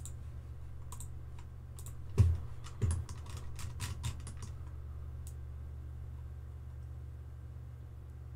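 Computer mouse and keyboard clicks at a desk, mostly bunched between about two and four seconds in, with two dull thumps among them, over a steady low hum.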